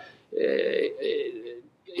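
A man's voice giving a drawn-out, low hesitation sound, "uhhh", for about a second, trailing off in the middle of a sentence.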